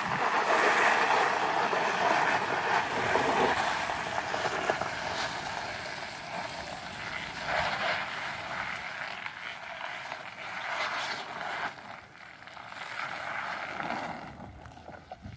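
SUV on off-road tyres driving slowly over bare rock and dirt: a steady rushing noise of engine and tyres that fades as it pulls away.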